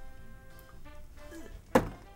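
Soft-tip dart striking an electronic dartboard once, a sharp thunk near the end, over quiet background music.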